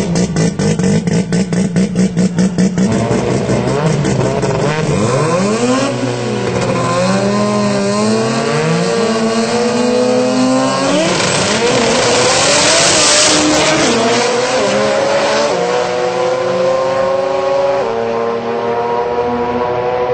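Two drag racing cars' engines: a fast, even popping while held on the line, then about four seconds in they launch and pull hard, their notes climbing and dropping back at each gear change, with a loud burst of hiss about twelve seconds in.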